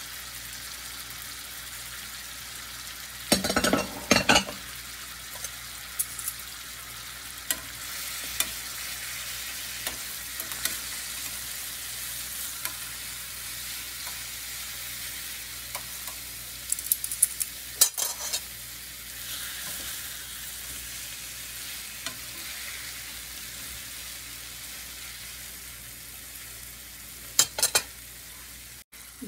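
Salmon fillets frying in butter in a frying pan: a steady sizzle. Short clusters of clicking and clatter from metal tongs against the pan come about four seconds in, around eighteen seconds as the fillets are turned, and again near the end.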